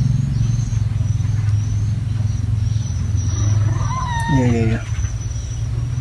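A steady low rumble throughout, with a short voice sound falling in pitch about four seconds in.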